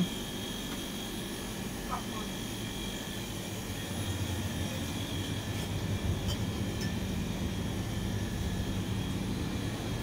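Steady hum of a shop's refrigerated drinks chillers, their fans and compressors running, growing a little louder about halfway through.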